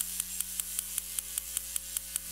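Small hand hammer tapping on marble in quick, even light strikes, about six a second, over a steady electrical hum and hiss.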